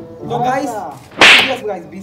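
A single short, loud swish-like crack a little over a second in, coming right after a brief vocal sound.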